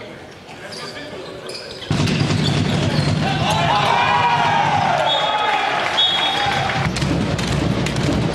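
Handball match sounds in a sports hall: the ball bouncing on the court floor among players' voices, then about two seconds in a sudden, much louder sustained wash of shouting voices.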